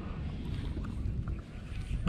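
Wind buffeting the camera microphone, a steady low rumble, with a few faint clicks on top.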